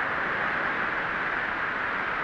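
Steady rushing noise like wind over sand, an even hiss that swells and eases slightly without any break.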